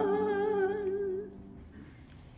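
The last held note of a hymn: a singing voice with vibrato over a sustained accompanying chord, dying away about a second and a half in.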